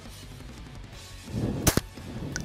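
A 12-gauge Benelli Nova pump shotgun firing a slug once near the end, a loud sharp double crack a split second apart, over faint background music.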